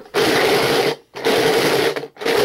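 Rummaging in a drawer heard over a phone line: three loud bursts of rustling, scraping noise, each just under a second long and about a second apart.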